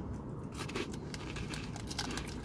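Eating and handling pastries: a run of small crisp crackles and crinkles from biting, chewing and picking the pastries up, starting about half a second in.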